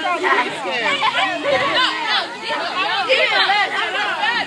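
A crowd of children chattering and shouting over one another, many high voices at once with no single speaker standing out.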